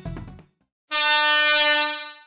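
A horn-blast sound effect: one steady, buzzy pitched blast lasting about a second, starting just before halfway through. Background music fades out at the start, before the blast.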